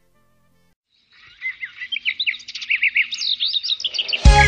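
Small songbirds chirping and twittering in quick, overlapping calls. They start about a second in and grow louder.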